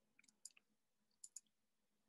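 Faint computer mouse clicks, a few quick clicks early on and another pair just past the middle, over near silence.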